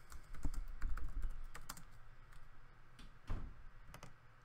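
Typing on a computer keyboard: a quick run of keystrokes in the first second and a half, then a few scattered clicks, with one louder click a little after three seconds.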